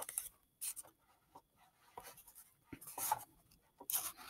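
Faint, scattered rustles and rubs of paper as the pages of an open hardcover picture book are handled and held.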